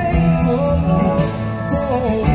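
Live rock band music: a man singing lead over electric guitar, with bass and drums underneath.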